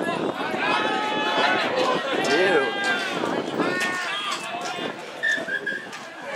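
Several voices shouting and calling at once across a rugby league field, players and onlookers yelling during a tackle and play-the-ball, with some long drawn-out calls.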